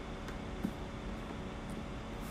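Steady background hiss with a couple of faint clicks from a plastic lock box being handled.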